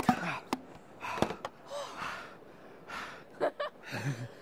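Breathless, gasping laughter, with three sharp pops in the first second and a half from Cheatwell Squeeze Popper toys firing foam balls.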